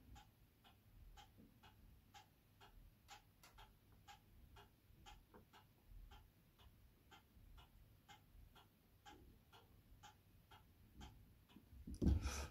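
Near silence with a faint, steady ticking, about two ticks a second.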